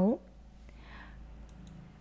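A few faint computer-mouse clicks in a quiet pause, a couple of them close together past the middle, after a woman's voice finishes a word at the very start.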